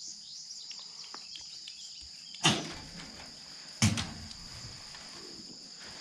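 Two sudden knocks about a second and a half apart, a goat bumping against the wooden boards and wire panel of its pen as it settles down, over a steady high insect trill.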